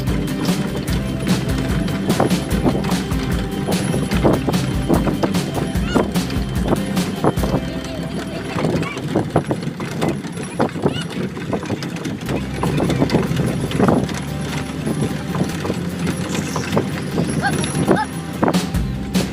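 A boat's engine drones steadily under frequent, irregular knocks and clicks from an anchor rope being worked at a deck winch.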